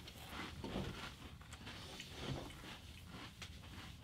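Faint crunching of several people chewing Pringles potato crisps, in short irregular crunches.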